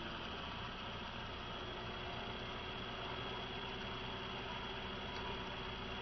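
Homemade axial-flux permanent-magnet motor-generator running steadily at reduced speed with a constant hum, under load while it charges its battery.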